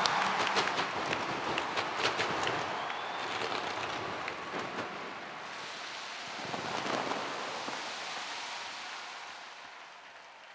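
Fireworks crackling and popping over crowd applause, dense sharp cracks in the first few seconds, another swell about seven seconds in, then the whole sound dies away.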